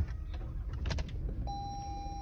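A phone being handled inside a car's cabin: a thump right at the start and a few light clicks over a low rumble. From about three-quarters of the way in, a steady high-pitched tone sets in and holds.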